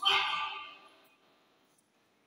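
A man's loud, high-pitched exclamation into a handheld microphone, fading out over about a second, followed by a pause of near silence.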